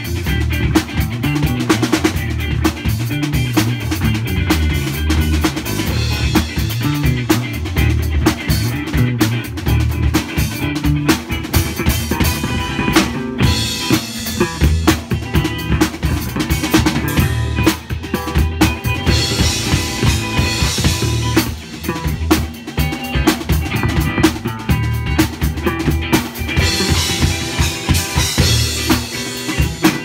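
Live rock band jamming a funk groove: a drum kit with kick, snare and cymbals over electric guitars played through amplifiers. The cymbals get busier around the middle and again near the end.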